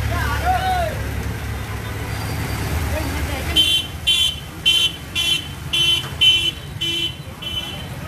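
Street traffic with a vehicle engine running close by, then a vehicle horn gives about eight short electronic beeps, roughly two a second, in the second half.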